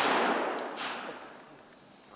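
The tail of a training mine-simulator blast set off by a tripwire, a noisy rush fading away over about a second and a half.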